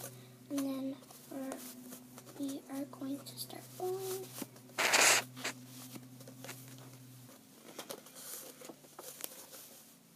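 A child hums a few short notes, then about five seconds in a single short, loud rasp of sticky tape being torn off the roll, followed by faint handling noises of paper and tape.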